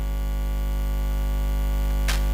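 Steady electrical mains hum with a buzzy series of overtones in the audio feed, growing slightly louder through the pause.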